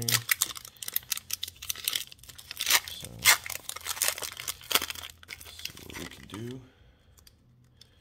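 Foil wrapper of a Pokémon card booster pack being torn open and the cards slid out, a dense run of sharp crinkles and tearing crackles that stops about six and a half seconds in.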